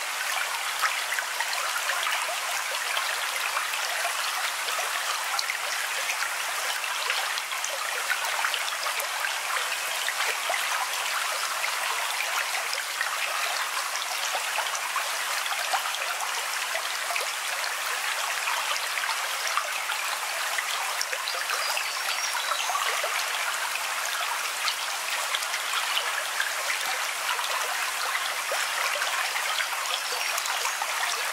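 Steady running water of a babbling stream, with many small trickling splashes.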